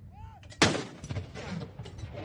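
A ceremonial field gun firing a salute round about half a second in: one sharp boom that fades over about a second.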